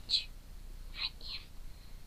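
A person whispering: a few short, hissy breaths of whispered words with no voiced speech.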